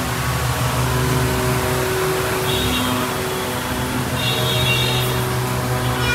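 Steady low mechanical hum, with faint higher tones coming and going over it.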